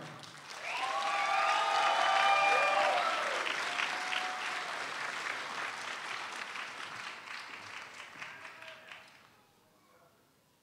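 Audience applauding, with voices calling out over the first three seconds; the clapping swells, then fades away and stops about nine seconds in.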